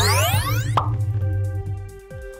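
Synthesized cartoon shrink-ray sound effect: a rising electronic sweep that ends in a quick upward blip about three-quarters of a second in, over music with sustained tones and a low drone that fades near the end.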